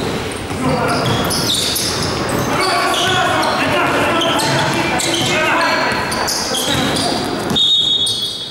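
Basketball game on an indoor hardwood court: the ball bouncing, with players' voices carrying through a large, echoing gym hall. A brief high steady tone sounds near the end.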